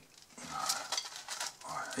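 A table knife spreading paste over the soft inside of a cut flatbread, making a few soft scrapes.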